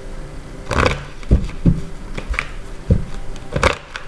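A deck of oracle cards being shuffled by hand, giving a series of sharp snaps and taps, about six across the few seconds.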